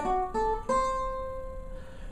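Tenor banjo (a custom OME with a 12-inch head) picked three times in quick succession, the last note left ringing and slowly dying away: the F-sharp and C, the third and seventh of a D7 chord, sounded on their own.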